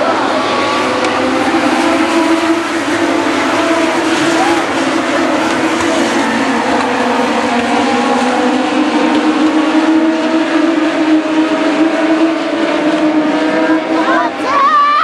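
A pack of US Legend race cars running at speed, their Yamaha motorcycle engines held at high revs in a steady, overlapping drone that rises and falls slightly as the cars go through the turns.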